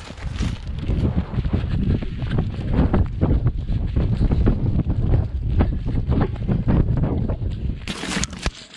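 Wind buffeting the microphone of a camera carried at a run, a heavy uneven rumble crossed by many irregular knocks and rustles.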